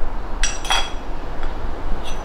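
Metal filter basket and espresso portafilter clinking together as they are handled: two quick clinks with a short, bright ring, close together just under a second in.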